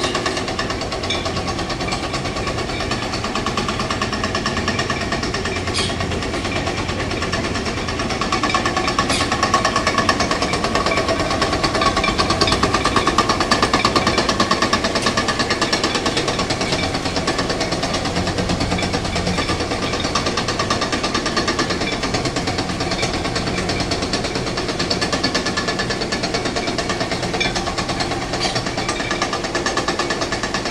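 Electric, belt-driven corn mill grinding fresh corn into masa, running with a steady, fast rattle that swells a little in the middle.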